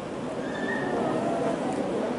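Indistinct murmur of voices in a hall, with a brief thin high tone about half a second in.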